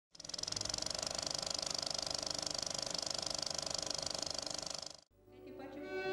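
Film projector running with a rapid, even clatter, which cuts off abruptly about five seconds in. A violin note then fades in at the very end.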